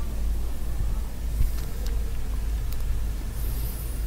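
Steady low hum of room tone, with a few faint ticks.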